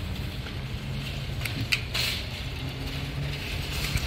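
Metal clicks and rattles from a shopping-cart coin lock as a coin is fitted in and the lock is worked, a few sharp clicks in the middle and another near the end, over a steady low hum.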